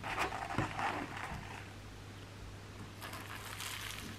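Paper napkin crinkling and rustling as it is handled around a pastry on a china plate, with a light knock about half a second in. A softer rustle follows near the end.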